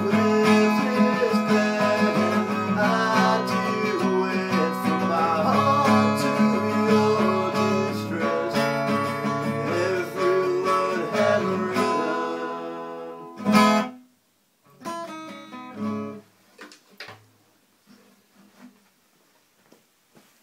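Acoustic guitar strummed in steady chords, winding down to a final strum about two-thirds of the way in that rings out and fades. Only a few faint clicks follow.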